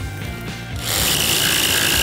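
A cordless circular saw starts about a second in and runs as it cuts through a sheet of plywood, with a steady high whine. Background music plays underneath.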